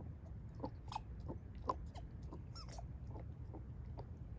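Dog chewing on a green rubber ball, with irregular short squeaks and clicks every fraction of a second. A steady low rumble runs underneath.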